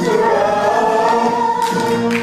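Music with a group of voices singing long held notes together, choir-like, changing to a new chord near the end.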